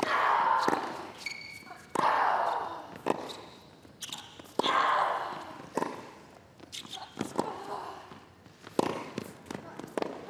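Tennis rally: racquet strings striking the ball back and forth, about one shot every second to second and a half. Several shots carry a loud vocal grunt from the hitting player, the loudest being the serve and the shots about two and four and a half seconds in.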